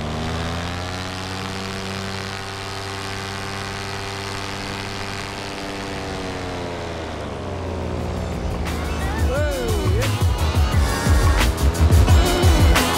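Moster 185 single-cylinder two-stroke paramotor engine running steadily in flight, its pitch dipping slightly about six seconds in. From about eight seconds, music with a heavy beat comes in over it and grows louder.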